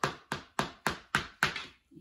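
A quick, even series of sharp taps or knocks on a hard object, about three to four a second, each with a short ring. Six fall here, and they stop about one and a half seconds in.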